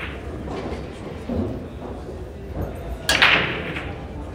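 A loud, sharp clack of pool balls about three seconds in, ringing on briefly, over the low hum and murmur of a large hall.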